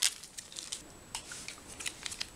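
Faint crinkles and small clicks of a small survival-ration packet being bent and pried at by hand, hard to open.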